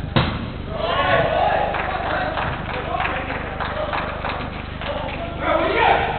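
Footballers shouting to each other during an indoor five-a-side game, with one sharp thud of the football being struck just after the start.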